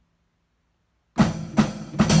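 Near silence, then about a second in a drum kit starts up with loud, evenly spaced strokes, about two a second.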